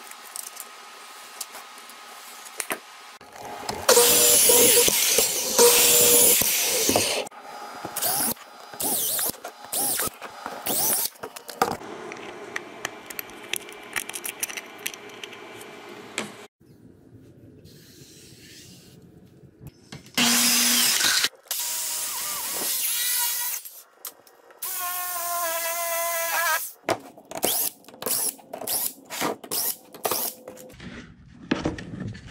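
Workshop tool work: several loud runs of a power tool, with a cordless drill among the tools in use, one run with a whine that rises in pitch near the end. Between them come knocks, clicks and rubbing as plastic boards and screws are handled.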